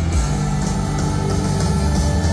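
A live rock band playing loudly through a stadium sound system, heard from within the crowd, with a heavy, steady bass and drums under sustained instrument tones.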